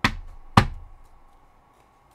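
Two sharp knocks on the tabletop, about half a second apart, each dying away quickly.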